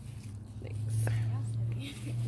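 Hushed whispering voices over a steady low hum, which swells a little in the middle.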